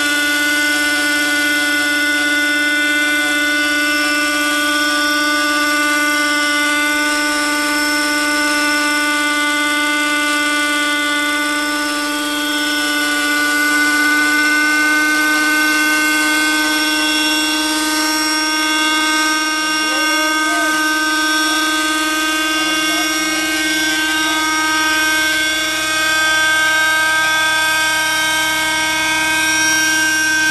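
JR Venture 30 radio-controlled helicopter with an OS 46 two-stroke glow engine, running steadily in flight with a high-pitched engine and rotor whine. The pitch rises slightly partway through.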